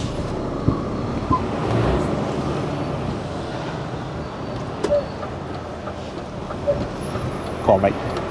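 Lorry diesel engine and road noise heard from inside the cab as the HGV pulls away from traffic lights, running steadily with a swell in engine level about two seconds in.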